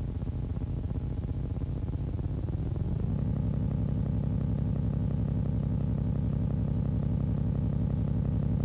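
A low, steady, engine-like rumble with a fast, even pulse, like an engine idling, getting louder and fuller about three seconds in. A faint, thin, high steady whine runs underneath.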